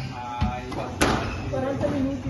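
Squash racket striking the ball about a second in, a sharp crack that echoes around the enclosed court, with a duller thump of the ball off the wall or floor shortly before.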